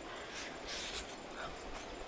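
Mouth noises of a person eating from a spoon: a soft slurp about a second in, then chewing.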